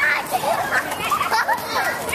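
A group of young children's high voices shouting and calling out over one another as they play.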